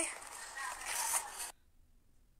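Rustling and scraping of a black cloth bag and plastic bags being handled, cutting off suddenly about one and a half seconds in.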